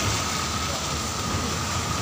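Steady hiss of rain and road traffic on a wet street: an even noise with a low rumble underneath and a faint steady high tone.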